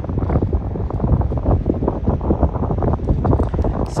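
Strong wind buffeting the microphone: a loud, irregular, gusting rumble.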